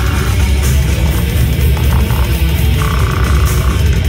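Slam death metal played loud by a live band: heavily distorted electric guitars, bass and drums in a dense, unbroken wall of sound.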